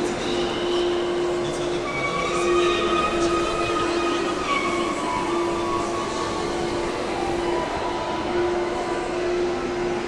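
Echoing ambience of a large bus station hall: a steady mechanical drone with a constant hum, and higher steady whining tones that come and go for a second or two at a time.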